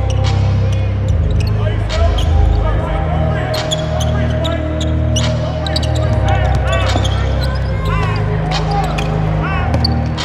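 Basketball dribbled on a hardwood court, with sneakers squeaking during the drive, over background music with a heavy bass line.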